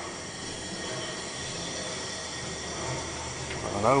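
Triple-expansion steam pumping engine turning over slowly on compressed air, giving a steady hiss and running noise with no clear beat.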